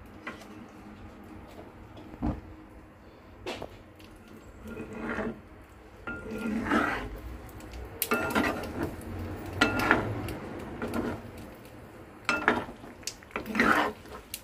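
Metal spatula scraping and knocking against a non-stick frying pan as tomato and egg are stirred, in irregular strokes that come sparsely at first and more often in the second half.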